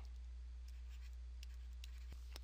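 Faint taps and scratches of a stylus writing on a pen tablet, over a steady low hum.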